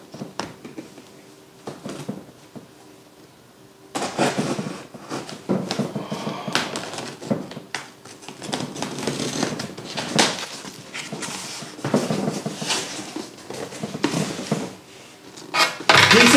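Small scissors slitting the packing tape on a cardboard box, with irregular scraping and rustling of tape and cardboard, and the flaps pulled open near the end. The first few seconds hold only a few small clicks.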